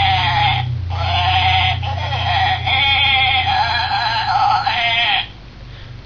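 Plush toy sheep's built-in voice box playing a recorded sheep bleat: several long, wavering baas in a row over a steady low hum, cutting off about five seconds in.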